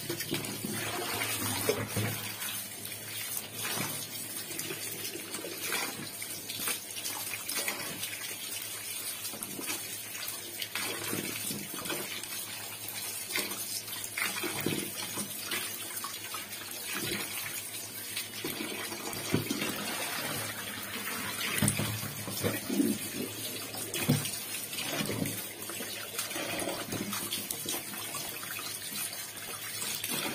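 Kitchen tap running into a tub of water full of tomatoes, with splashing and sloshing as hands rub and turn the tomatoes under the stream. The flow is steady, with irregular louder splashes.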